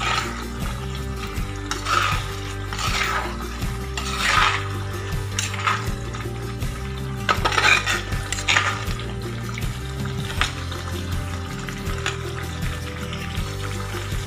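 A spoon stirring and scraping in a pan of bubbling bitter gourd pickle masala, with a scrape every second or two for the first ten seconds or so. Background music plays throughout.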